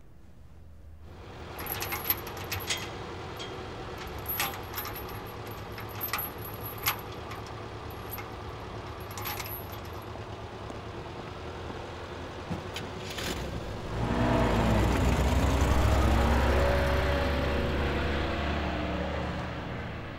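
Night ambience with a high, broken insect chirring and scattered small clicks. About fourteen seconds in, a vehicle engine rumbles past much louder, its pitch wavering up and down, and fades out toward the end.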